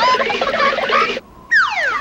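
Cartoon sound effects: a busy flurry of short chirps and squawks lasting about a second, then a falling whistle glide near the end.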